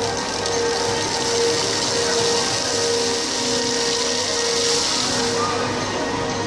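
Fountain water splashing steadily under the murmur of a crowd, with music playing held tones.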